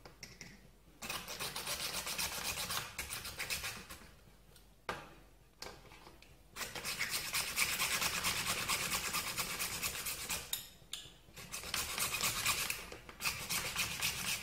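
Junior hacksaw sawing through the hard shell at the hinge joint of a crab claw: a quick, scratchy rasping in three spells, with short pauses about four and a half seconds in and about ten and a half seconds in.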